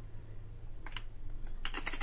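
Light clicks and taps begin about a second in and come thickest near the end, as a hand handles the weight valve on an aluminium pressure cooker.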